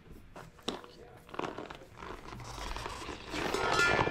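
Deflated tubeless mountain-bike tyre being worked off the rim by hand: scattered crackles and clicks, then rubbing of tyre rubber against the rim that grows louder in the second half.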